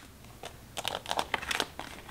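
Tarot cards being picked up off a spread and slid together in the hand, a quick run of short papery scrapes and taps.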